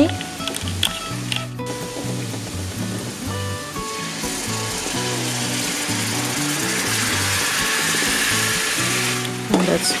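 Butter and garlic sizzling in a frying pan over background music. The sizzle swells to a loud hiss about four seconds in as honey is poured into the hot butter, then drops back near the end.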